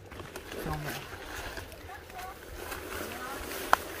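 Faint, indistinct voices in the background, with a single short sharp click a little before the end.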